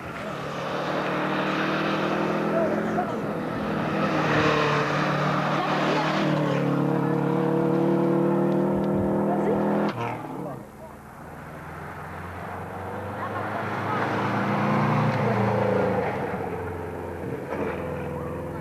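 Rally car engine running hard as the car charges down a dirt stage toward and past the spectators, its pitch stepping up and down with the gears, cutting off abruptly about ten seconds in. A second run of engine sound swells and fades over the last few seconds.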